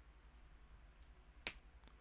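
Near silence, broken by one short, sharp click about one and a half seconds in and a fainter one just after it.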